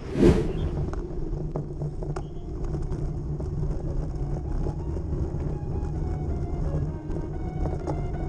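Low wind and road rumble on a bike-mounted camera, with a sudden loud whoosh just after the start. Background music comes in at about two seconds and grows louder.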